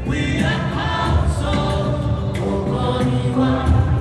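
Choir singing with instrumental backing, the voices holding long notes.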